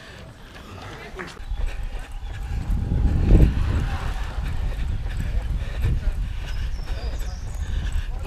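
A runner's footsteps on asphalt in a steady rhythm, with wind rumbling on the microphone of a handheld camera carried along at running pace; it gets louder from about three seconds in.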